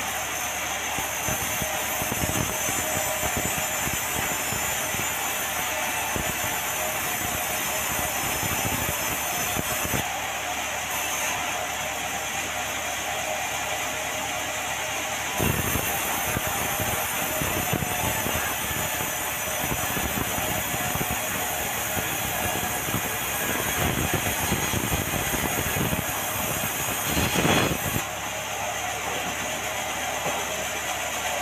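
Sawmill saw running steadily and cutting through red meranti timber as the beam is fed along the roller table, with a steady whine over the noise of the cut; the sound changes as cuts begin and end and swells briefly near the end.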